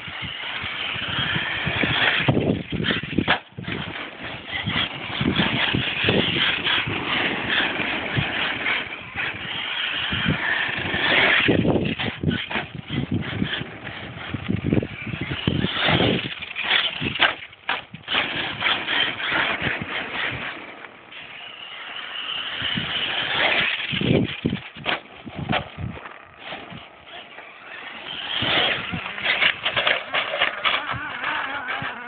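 HPI Savage Flux HP brushless electric RC monster truck running over loose dirt and gravel, its sound surging and fading again and again as it speeds up, turns and moves off, with a quieter stretch about two-thirds of the way through.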